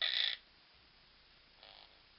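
Monk parakeet giving a short, harsh call, followed about a second and a half later by a fainter, shorter one.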